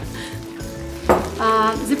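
Thin slices of tofu frying in olive oil in a pan on a gas burner, a steady sizzle.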